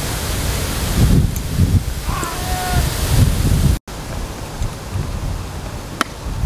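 Strong wind buffeting the microphone: a steady rushing noise with low, gusty rumbles that swell and fade.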